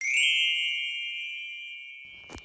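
A single bell-like chime sound effect: one bright strike that rings out with a clear, high tone and fades away slowly over about two and a half seconds.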